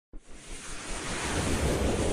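Whoosh sound effect of an animated news intro: a rushing noise with a low rumble that starts suddenly and swells steadily louder.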